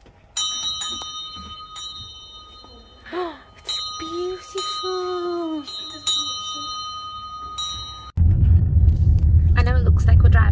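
Bell-like chime tinkling as the pottery shop's door is opened, struck again and again, its clear metallic tones ringing on for several seconds. About eight seconds in, it gives way abruptly to the loud, steady low rumble of a car driving.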